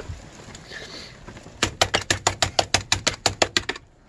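Small handheld scraper worked rapidly back and forth on a laminated board, about seven sharp strokes a second for some two seconds, starting partway in and stopping abruptly near the end.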